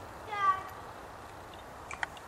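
A dog gives one short, high yelp about half a second in, dipping slightly in pitch. A sharp click follows near the end.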